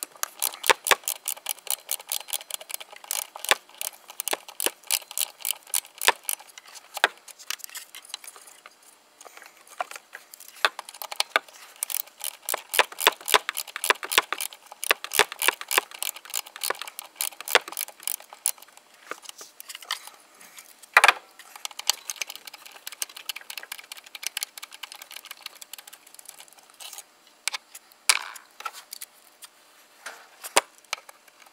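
Socket ratchet clicking in quick runs as it undoes the throttle body's retaining screws, with short pauses between runs. A sharper knock of the tool against metal stands out about two-thirds of the way through, and another comes near the end.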